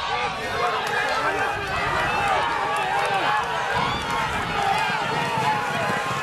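Spectators shouting and cheering, many voices at once, over the hoofbeats of racehorses galloping on a dirt track.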